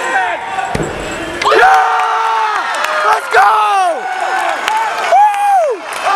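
A gymnast's still rings dismount landing on the mat with a dull thud about a second in, followed by teammates' loud cheering: several voices in long shouts that fall in pitch at the end.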